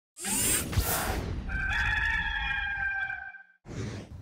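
A whoosh, then a rooster crowing once in one long held call of about a second and a half, as part of an animated intro sting. A second whoosh swells in near the end.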